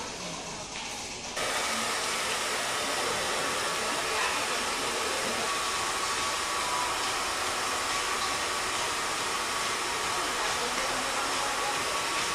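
Background music for about the first second, cut off suddenly by a hair dryer running steadily, a continuous even whooshing hiss with a faint motor whine.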